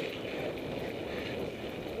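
Steady rushing noise of wind on the microphone of a bike-mounted camera, mixed with mountain-bike tyres rolling over a dirt road.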